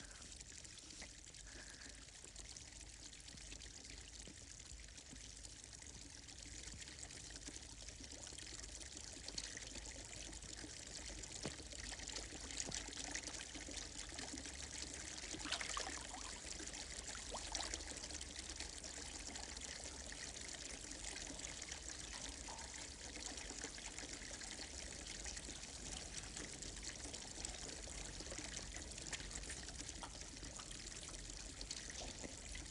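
Water trickling and running steadily, like a small spring over rock, growing a little louder over the first ten seconds or so, with two brief louder moments about halfway through.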